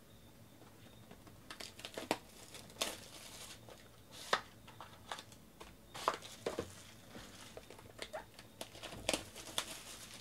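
Clear plastic shrink wrap crinkling and tearing as it is stripped off a sealed trading card box. It comes as irregular sharp crackles, starting about a second and a half in.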